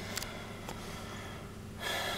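Low steady background noise with a faint hum, then a person's audible in-breath near the end.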